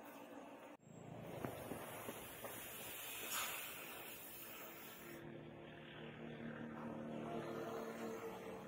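A red-hot leaf-spring-steel knife blade quenched in water, hissing and sizzling with a few sharp crackles as steam boils off: the steel is being hardened. The hiss starts after a sudden break about a second in.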